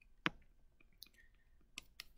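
Faint stylus clicks and taps on a tablet screen during handwriting: one sharper click about a quarter-second in, then a few softer ticks.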